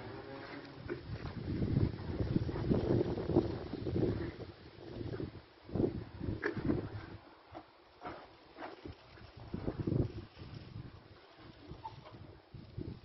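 Wind buffeting a phone microphone in irregular low gusts, heaviest in the first few seconds and dying down toward the end.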